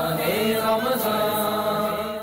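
Chanted devotional singing, a nasheed, in voices alone with long held notes and no instruments or percussion.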